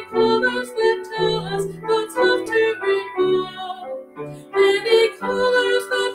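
A woman singing a hymn with piano accompaniment.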